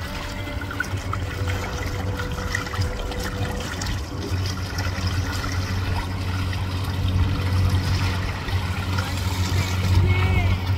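Water splashing and trickling against the hull of a sailboat under way, over a steady low rumble.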